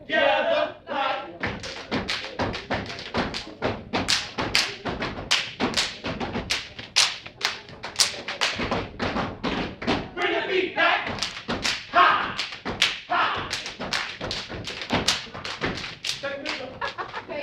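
Step team stepping: feet stomping and hands clapping and slapping the body in a quick, sharp rhythm of impacts. Voices call out for a few seconds about two-thirds of the way through.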